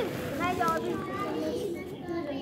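Several children's voices talking and calling over one another.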